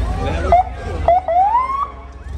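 Police car siren: two short chirps about half a second and a second in, then a rising whoop for about half a second that cuts off near the end.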